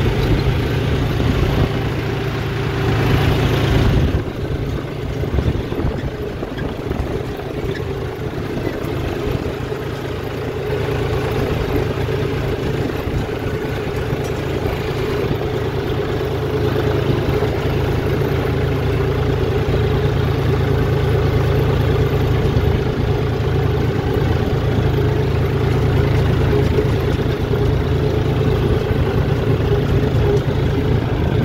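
John Deere tractor's diesel engine running steadily as the tractor is driven across a ploughed field, heard from the driver's seat. The engine sound eases off about four seconds in, then builds back up over the next several seconds.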